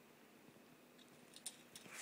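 Near silence, with a couple of faint clicks about one and a half seconds in.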